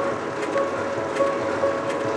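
Noodle-factory flour mixer running, its paddle churning dry flour, with a sharp knock repeating about every three-quarters of a second under background music.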